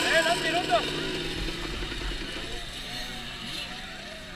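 People talking in the background, clearest in the first second and then fading under a steady low noise. No engine is running.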